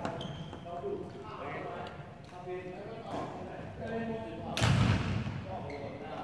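Badminton play in a large, echoing indoor hall: players' voices and court noise throughout, with one loud hit or thud about five seconds in.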